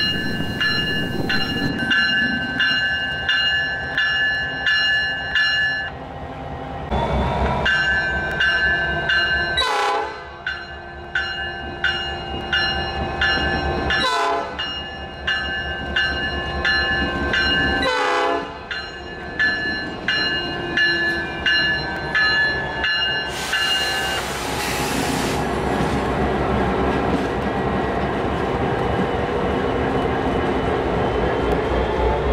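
Grade-crossing bell ringing in steady strokes about twice a second while a Norfolk Southern SD60E diesel locomotive rolls slowly through the crossing, its engine and wheels running underneath. The bell stops about 24 seconds in, leaving the locomotive's steady rumble.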